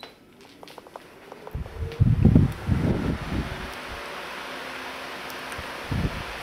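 A Soleus pedestal house fan is switched on and runs, with a steady rush of air that builds from about two seconds in. A few light clicks come in the first second or so, and low thumps come between about one and a half and three and a half seconds in.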